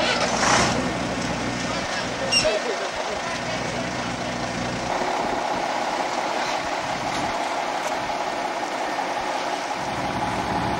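Diesel engine of a DAF 2800 heavy-haulage truck running, with a short hiss near the start. About two and a half seconds in the deep rumble drops away, leaving a steadier, thinner drone.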